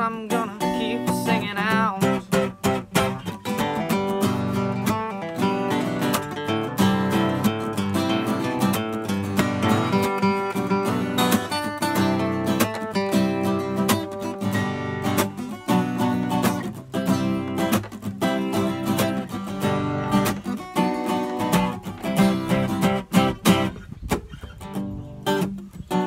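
Two acoustic guitars strummed together in an instrumental passage between sung verses, steady chord strokes with no vocals.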